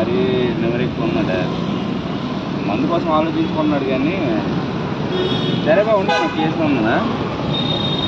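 Steady roadside traffic noise from passing vehicles, with short vehicle horn toots about halfway through and again near the end.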